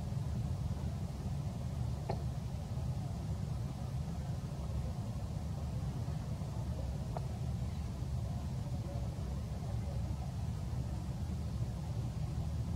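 A steady low background rumble with a couple of faint clicks.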